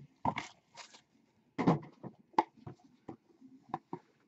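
Irregular short clicks, taps and knocks, about a dozen, with brief rustles: hands picking up, turning and setting down a hinged trading-card box on a table.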